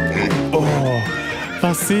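Horse whinny sound effect over background music, its pitch falling about half a second in.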